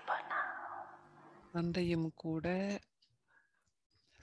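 Speech only: a voice speaks a short phrase midway, after a fading breathy hiss, then falls silent for about a second before the end.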